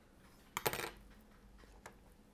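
Small metal hand tools clinking briefly as they are put down and picked up: a short clatter of a few sharp metallic clicks about half a second in, and one faint tick near the end.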